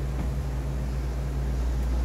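Electric fan running: a steady low hum with an even hiss of moving air.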